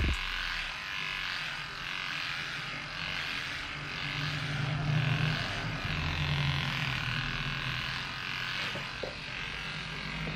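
Cordless electric hair clipper running as it shaves off short hair: a steady buzz that swells a little in the middle as the blade works across the head.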